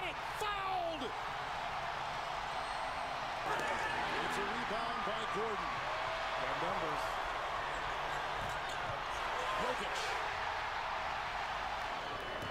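Basketball arena crowd noise from a game broadcast, with the ball being dribbled on the hardwood and occasional short knocks.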